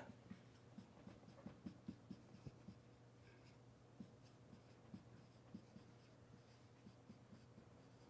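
Marker writing on a whiteboard: faint, short strokes and taps as letters are written.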